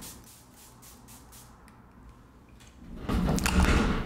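Pump-spray bottle of facial setting spray misting onto the face: quiet at first, then a louder hiss about three seconds in.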